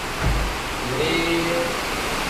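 Steady rain falling on a wet street, with a brief low thump about a quarter second in.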